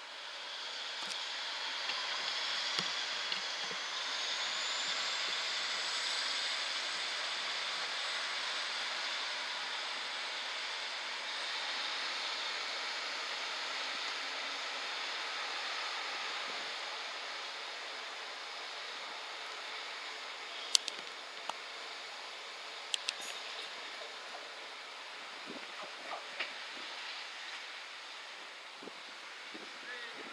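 Class 150 Sprinter diesel multiple unit pulling away, its sound building over the first few seconds with a rising whine that then holds steady. It fades slowly as the train draws off, with a few sharp clicks about two-thirds of the way through.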